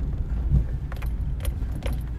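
Inside a moving car: a steady low engine and road rumble, with a few short light clicks and rattles scattered through it.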